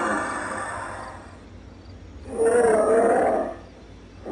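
Plague doctor animatronic's recorded sound effect: a breathy, hissing growl, then about two seconds in a louder, wavering groan lasting about a second.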